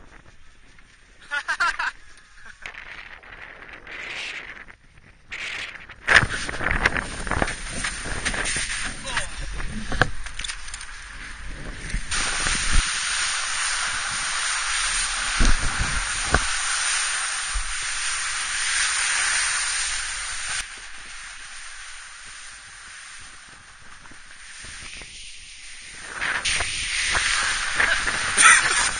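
A snowboard sliding and scraping over spring snow, a steady rushing hiss, with wind buffeting the camera microphone in deep gusts. It starts about six seconds in, is loudest for several seconds in the middle and eases off towards the end.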